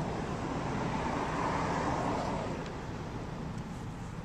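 A passing road vehicle: a steady traffic noise that swells to a peak about a second and a half in and then fades away.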